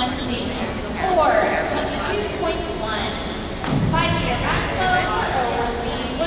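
Indistinct voices calling out and chattering across an indoor pool hall, with a single low thump about four seconds in.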